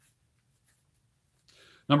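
Near silence in a small room: a pause in a man's talk, with his voice starting again at the very end.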